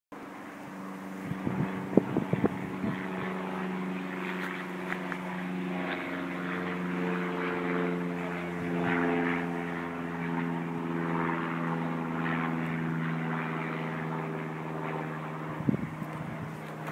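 Narrowboat diesel engine running steadily at low revs, with a few sharp knocks about two seconds in.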